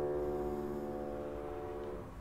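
A held piano chord ringing on and slowly dying away, cut off at the very end.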